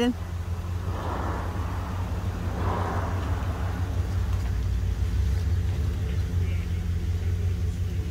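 Steady low outdoor rumble, with a swell of hissing noise about one to three seconds in.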